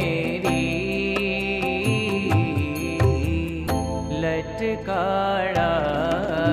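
Indian devotional song: a sung melody over a steady percussion beat.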